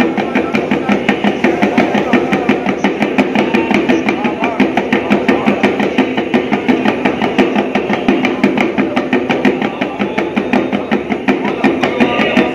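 Temple aarti percussion struck in a fast, even beat of about four strokes a second, over a steady ringing.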